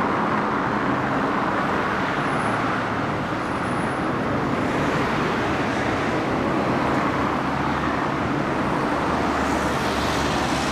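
Steady road traffic noise, an even rush of passing cars with no single event standing out.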